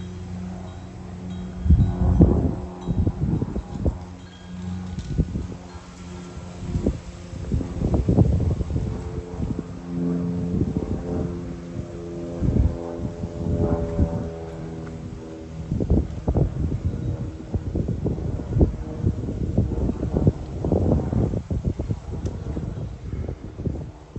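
Wind chimes ringing in gusty wind, several sustained tones overlapping and fading, while wind gusts buffet the microphone again and again.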